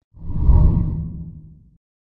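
A deep transition whoosh sound effect that swells quickly, peaks about half a second in and fades away over the next second.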